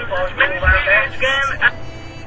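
A voice, much quieter than the main talker, in two short stretches over faint background music.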